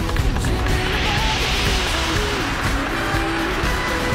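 Anime soundtrack music with a rushing, hissing sound effect that swells up about a second in and fades out over the next couple of seconds.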